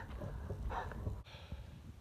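Wind rumbling on a phone microphone, with a short breath from the person holding it about a second in.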